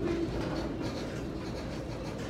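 Freight train of tank cars rolling slowly past, a steady rumble of wheels on rail with faint clicks. A held train horn note cuts off just after the start.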